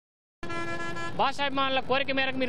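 An edit gap of dead silence, then a steady, even tone lasting under a second, then a man talking loudly into news microphones outdoors.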